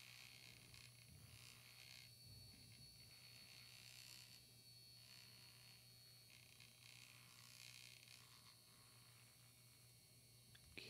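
Faint, steady buzz of a small battery-powered Norpro mini mixer (frother) spinning in a bottle of e-liquid, blending it smooth.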